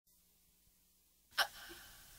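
Near silence, then about a second and a half in a single short, sharp sound, followed by a faint steady hiss.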